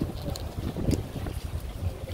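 Wind buffeting a phone's microphone outdoors, a steady low rumble.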